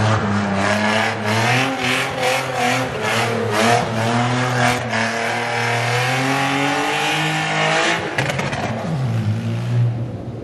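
BMW E36 coupe doing donuts on wet asphalt: the engine revs high and wavers up and down as the rear tyres spin, with a steady hiss of tyres on the wet surface. Near the end the engine note dips and then climbs again.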